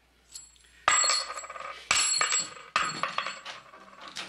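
A small metallic clink, then three heavy bootsteps about a second apart, each with a bright metallic jingle that rings on briefly.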